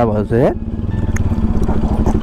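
Bajaj Pulsar NS200 single-cylinder engine running steadily under way, a rapid even pulsing, heard from the saddle.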